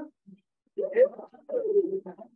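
A person's voice calling out twice, each call about half a second long, the first rising and peaking in pitch, the second falling.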